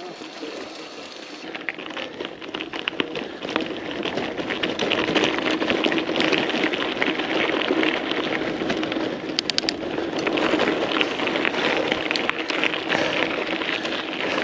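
Mountain bike tyres rolling down a loose gravel and dirt track, a dense crunching and crackling with the bike rattling over stones. It grows louder over the first few seconds as the bike picks up speed, then stays steady.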